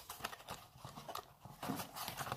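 Light irregular clicks and rustling from hands handling a plastic and metal smartphone monopod and its packaging.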